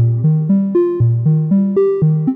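Software modular synth patch, sequenced by the PathSet Glass Pane module, playing a run of short plucked synth notes at about four a second. Each note starts sharply and fades quickly, and the pitch steps up and down from note to note.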